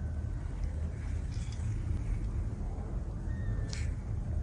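Steady low background rumble, with a couple of faint, brief high squeaks, one about a second and a half in and one near the end.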